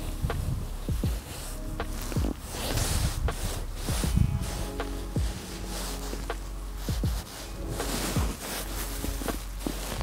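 Rustling of a padded jacket and fingers handling fishing line, irregular and close, over faint background music.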